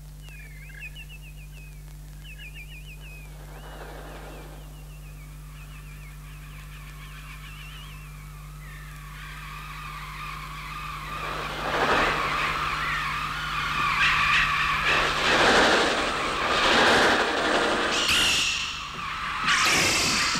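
Electronic bird sounds made on the Mixtur-Trautonium: faint, thin twittering chirps at first, then from about ten seconds in a loud, dense flurry of chirps and flutter that swells as the birds swarm in.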